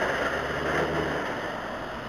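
Road traffic on a wet road: a vehicle engine's low rumble over tyre hiss, a little louder for about the first second, with the rumble dropping away just after a second in.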